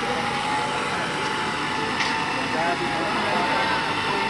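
Indistinct voices of people gathered around, over a steady hum.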